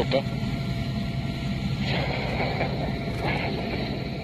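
Sea King rescue helicopter running, a steady dense low drone, with faint voices over it about halfway through.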